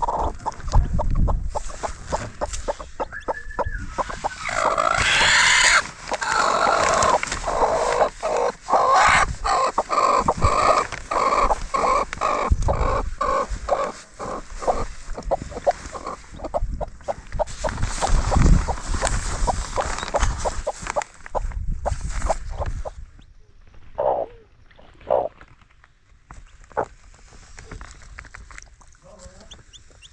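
A broody hen sitting on eggs clucks and growls as a hand reaches in under her, over rustling and crackling plastic sheeting. The sounds fall away about three-quarters of the way through, leaving a few short clucks.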